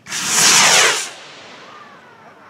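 Firework rocket taking off: a loud rushing hiss of its burning motor for about a second, then fading as it climbs away.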